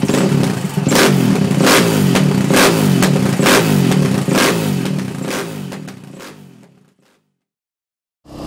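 Engine revved up and down over and over, with a sharp hit a little under once a second, fading out to silence about seven seconds in.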